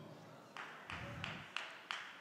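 Faint hand claps in a large hall, about three a second, each with a short trail of room echo.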